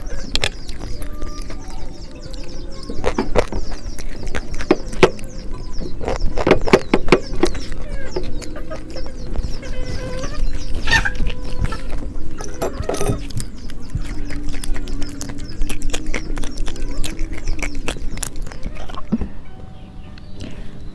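Chickens clucking at intervals in the background. In the first seconds there are the small clicks and scrapes of fingers eating rice off a ceramic plate.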